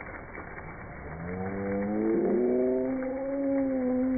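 A long, drawn-out vocal shout that rises in pitch at the start, holds for about three seconds and then falls away, as on a ride down a water slide.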